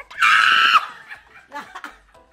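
A person's loud, high-pitched scream, held for about half a second and dropping in pitch at the end, followed by quieter laughter.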